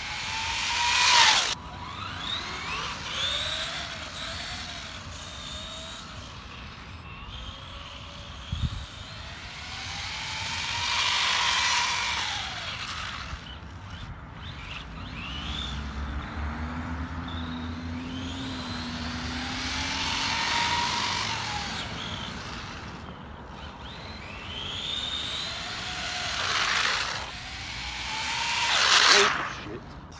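Electric RC buggy with an 11-turn Super Modified brushed motor making a series of fast passes, its high motor whine swelling and sliding in pitch as it goes by, with tyre hiss on the wet tarmac. The loudest passes come about a second in and near the end. The wheels are slipping inside the tyres on the wet surface, so the motor cannot put its power down.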